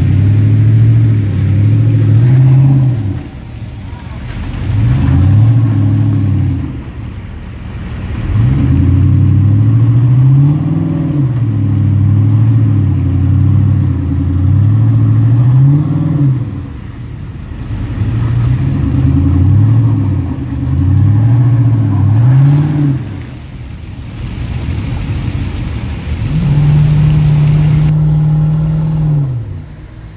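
Off-road rock crawler's engine revved hard in repeated bursts while climbing rocks through a creek, its pitch climbing and dropping every second or two, with a few brief lulls and a steady held rev near the end.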